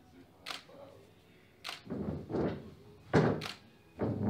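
Camera shutter firing about four times at uneven intervals, each a short thunk.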